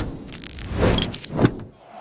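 Broadcast graphics transition sound effect: whooshes swelling twice, about a second in and again half a second later, with a metallic shimmer, then cutting off.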